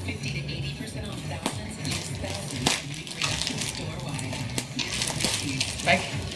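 Plastic bubble wrap crinkling and crackling in irregular bursts as it is handled and cut open with a small blade.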